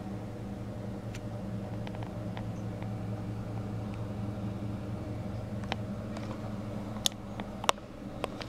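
Steady low hum of aquarium equipment such as the filter or air pump, with a few sharp clicks in the last few seconds, the loudest two about half a second apart.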